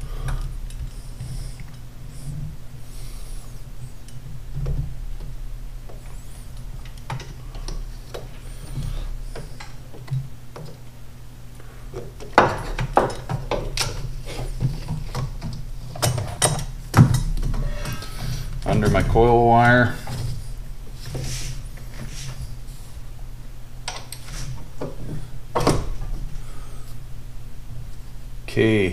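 Scattered clicks, taps and knocks of a stiff clutch cable and hands against parts in a car's engine bay as the cable is fished through, busiest in the second half, over a steady low hum.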